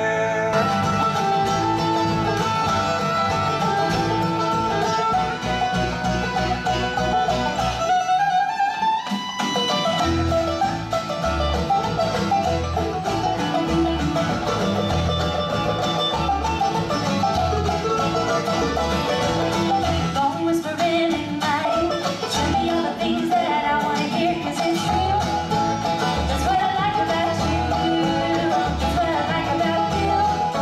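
Live acoustic bluegrass music: a group with acoustic guitar and mandolin, with singing, breaks off about eight or nine seconds in, and a full band with banjo, fiddle, guitars and mandolin takes over with a steady beat.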